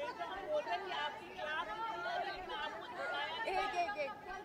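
Several people talking at once: the overlapping chatter of a group of reporters at a press interview.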